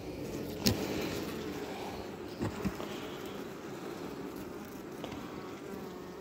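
Honeybees humming steadily around an open hive while a honey frame is lifted out, with a sharp click about a second in and a couple of light knocks a little later from the frame being handled.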